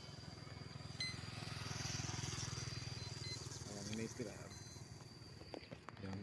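Small underbone motorcycle riding past close by, its single-cylinder engine running with a steady low putter that grows louder to a peak about two seconds in and then fades away.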